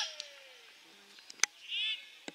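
A dull thud as a football is kicked, then a sharp knock about halfway through. Near the end a bird gives a quick run of chirping calls.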